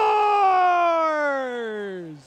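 A man's drawn-out shout of "scores!", the hockey announcer's goal call: one long call whose pitch falls steadily, fading near the end.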